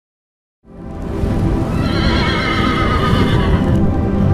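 Logo sting: after a brief silence, music swells in, and a horse whinny sound effect rings out over it from about two seconds in, fading just before the end.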